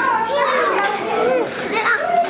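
Young children's high-pitched voices at play: several small children talking and calling out, overlapping.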